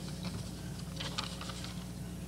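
A few soft clicks and light rustles at the lectern microphone, in two small clusters near the start and about a second in, over a faint low steady hum.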